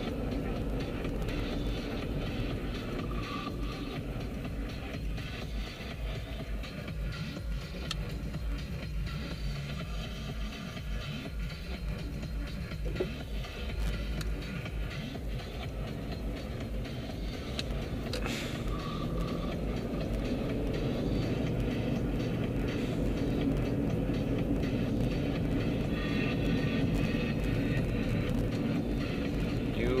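Steady engine and road rumble of a car being driven, heard from inside the cabin, with music playing faintly. It grows somewhat louder over the last third.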